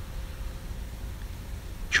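Low steady background rumble with no distinct events.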